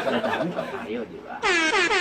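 A loud horn sound effect, edited in for comic effect, blares about one and a half seconds in: its pitch drops at the onset and then holds steady. Before it, a jumble of several voices.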